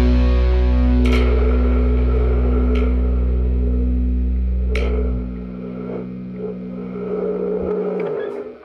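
Distorted electric guitar and bass left ringing through the amplifiers after the song's final chord: sustained notes over a steady amp hum, broken by a few sharp clicks. The low end cuts out about five seconds in, leaving thinner ringing tones.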